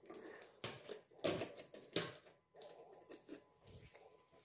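A few light clicks and knocks, spaced irregularly, from handling a metal post office box: its small door, key and the mail taken from it.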